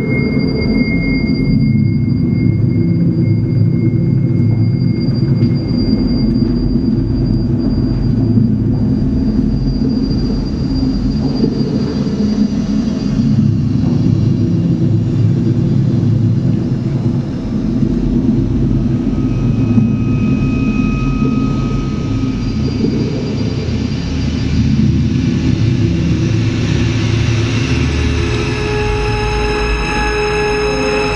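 Electroacoustic concert music: a dense, low rumbling drone with a few thin, high held tones above it. More held tones join near the end.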